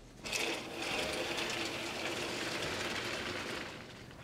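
Heavy curtain drawn shut along its ceiling track, the runners rattling steadily as it slides for about three seconds. It starts suddenly just after the beginning and fades away near the end.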